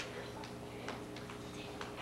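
Footsteps on a wooden stage floor: faint, irregular light ticks and taps a few tenths of a second apart, over a low steady hum.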